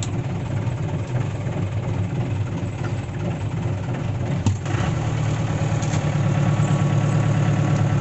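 Mahindra Major Jeep's four-cylinder diesel engine running at idle. There is a sharp click about four and a half seconds in, after which the engine runs louder.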